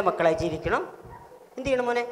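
A man's voice making short wordless calls and yelps with no words, including a quick rising whoop about two thirds of a second in and a held call near the end.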